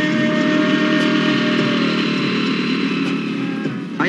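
Motorcycle engine running as the bike rides up, over steady background music.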